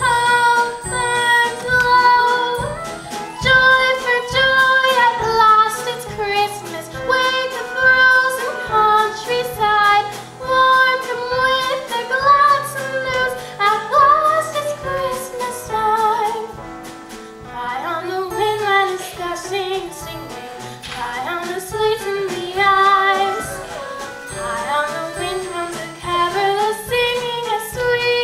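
Children's voices singing a musical-theatre song over instrumental accompaniment with a steady beat.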